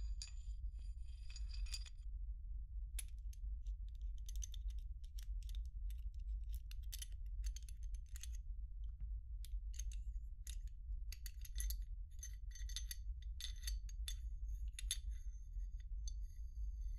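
Metal clicks and scrapes as a field-stripped pistol's slide is handled, coming in an irregular run, with light ringing clinks growing more frequent in the second half. A steady low hum lies underneath.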